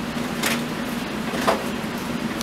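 Steady low room hum, with two brief soft rustles about a second apart.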